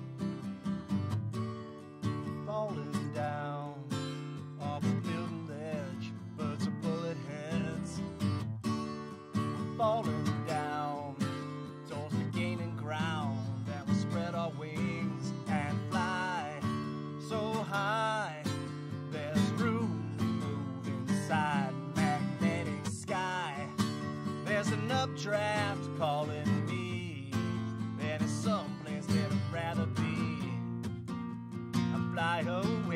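Acoustic guitar strummed in a steady rhythm, with a man's singing voice joining about two seconds in and carrying on over it.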